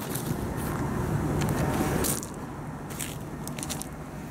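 Footsteps crunching on loose gravel, loudest in the middle, with a faint steady low hum underneath.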